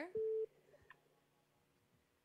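A single short telephone-line beep near the start: one steady tone lasting about a third of a second as a caller's line is connected.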